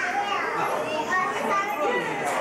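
Several children's voices talking and calling out at once, high-pitched chatter from a crowd of visitors.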